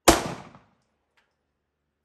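A single shot from a Browning Hi-Power 9mm pistol: one sharp crack with a short echo that dies away within about half a second. A faint short ping follows about a second later.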